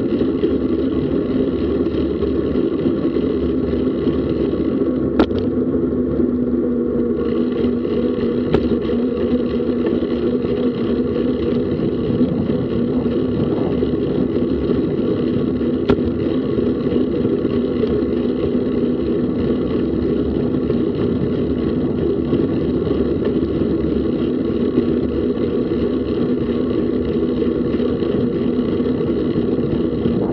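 Steady rumble of wind on the mic and tyre noise from a bicycle rolling along a paved path at about 20 km/h, with a few sharp clicks from bumps or rattles.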